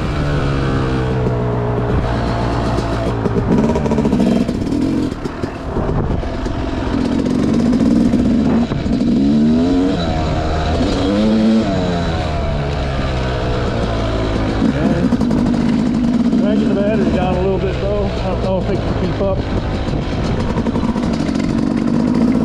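Yamaha YZ250X single-cylinder two-stroke dirt bike engine being ridden, revving up and easing off again and again, its pitch rising and falling several times.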